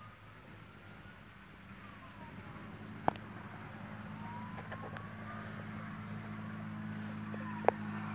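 A motor vehicle's engine: a steady low hum that grows gradually louder as it draws nearer, with a couple of faint clicks.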